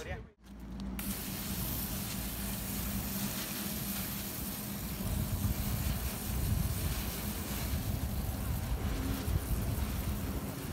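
Hand-held aerosol fire-extinguisher can spraying onto burning wood: a steady hiss that sets in about a second in, over a steady low hum and rumble.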